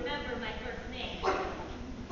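Actors' voices on a theatre stage, with a sudden louder cry a little after a second in.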